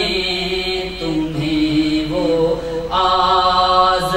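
A man's solo voice chanting Sufi devotional verse (arifana kalam), drawing out long held notes that glide slowly up and down, with a louder phrase starting about three seconds in.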